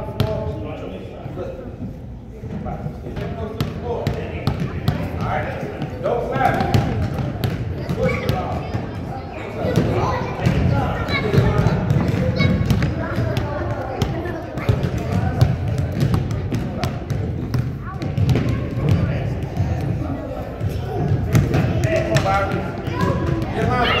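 Basketballs bouncing repeatedly on a hardwood gym floor as young children dribble, with short thuds through the whole stretch.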